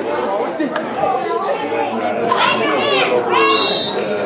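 Chatter of many voices, then youth football players shouting together in high voices over about the last second and a half as the huddle breaks.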